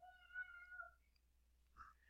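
A faint, high-pitched, drawn-out cry in the background that glides up briefly, then holds steady and stops about a second in.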